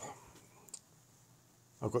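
A single short click about three-quarters of a second in, between a man's spoken words.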